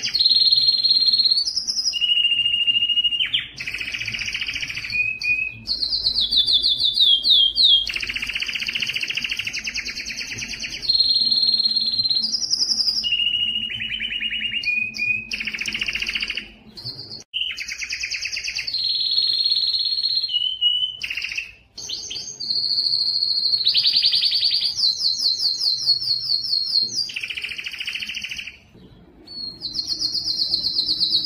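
Male domestic canary singing a continuous song of rapid trills and rolled notes, switching to a new phrase every one to two seconds, with a few brief pauses.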